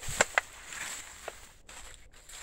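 Footsteps through dry fallen leaves and grass, with two sharp clicks close together near the start.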